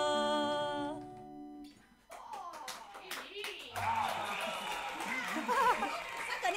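A woman's voice holding the last sung note over an acoustic guitar, ending about a second in. After a brief pause a few people clap for about two seconds, then excited voices whoop and laugh.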